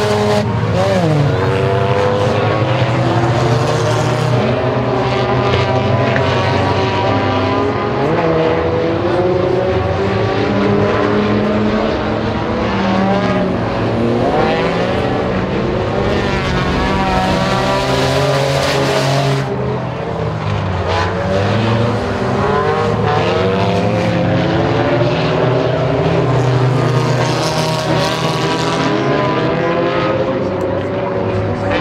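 Several compact stock cars racing on a dirt oval, their engines revving up and falling away over and over, several at once, as the cars go by.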